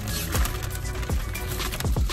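Background music with deep bass-drum booms that drop in pitch, about one every three-quarters of a second, over sustained tones.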